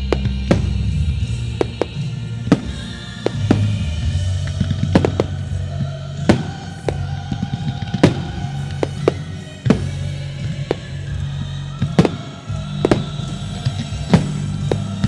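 Aerial firework shells bursting in sharp bangs, irregularly about once a second, over loud music with a steady low bass.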